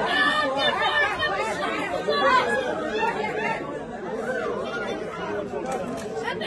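Crowd chatter: several voices talking over one another at close range, some in Arabic.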